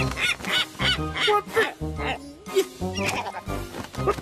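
Cartoon seagull squawking in a quick series of short calls, about three a second, over background music.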